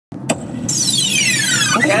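A sharp click, then a high-pitched squeal that slides steeply down in pitch over about a second, above the steady low rumble of a car's cabin; a voice starts at the very end.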